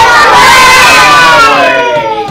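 A class of young children shouting together, loud, in one long drawn-out call that slides slowly down in pitch.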